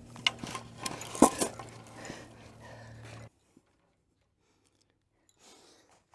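Wooden blocks being handled and set down on one another, a few knocks and clatters with the loudest knock about a second in; the sound cuts off suddenly a little past three seconds.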